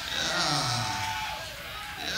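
Audience members shouting and whooping in a club between songs, captured on a raw live cassette recording.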